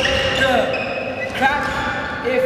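Recorded R&B song playing: a sung vocal line over a thudding low beat.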